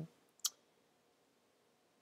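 A single short click about half a second in, against near-silent room tone.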